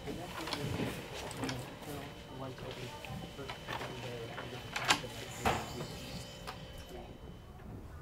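Quiet room with a faint murmur of low voices and light handling and movement noises, with two sharp knocks a little after halfway.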